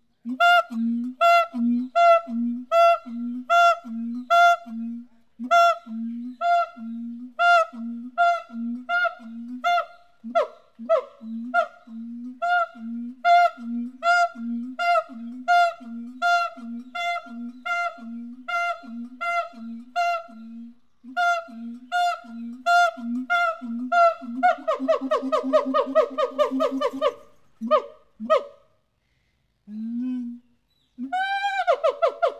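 Siamang gibbon calling in a steady series of short pitched notes, a little more than one a second. About 25 seconds in, it breaks into a fast run of quick notes that lasts a couple of seconds, followed by a few more single calls.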